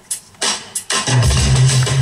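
Backing-track music starting over the hall's loudspeakers: a few separate sharp hits, then a full beat with heavy bass from about a second in.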